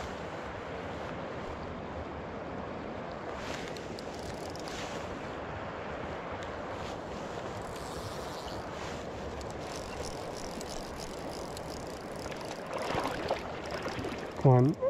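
Shallow river riffle, water rushing steadily around the angler's legs, with a brief louder stir near the end.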